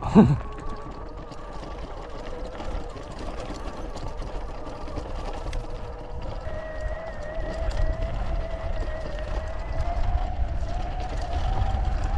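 Sur-Ron Light Bee X electric dirt bike under way on a dirt trail: a faint electric motor whine over tyre and wind rumble, the whine rising slowly in pitch in the second half as the bike gathers speed.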